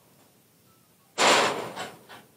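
A loud metal clang from the steel cattle-handling pens and gates, sudden about a second in, then ringing and dying away over most of a second.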